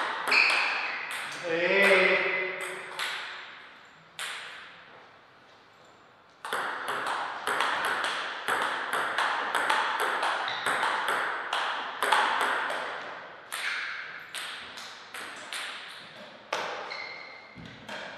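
Table tennis rallies: the ball clicks sharply off rackets and table in quick alternation, first in a short exchange, then after a pause in a long rally of about two to three clicks a second. A voice calls out briefly about two seconds in.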